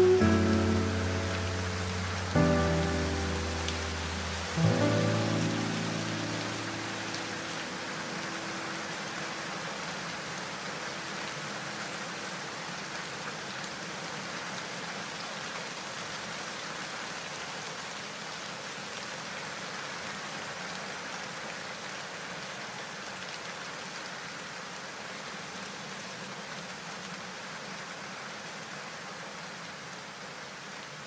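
A song's last sustained chords are struck three times in the first five seconds and ring away. A steady sound of rain takes over and slowly grows fainter.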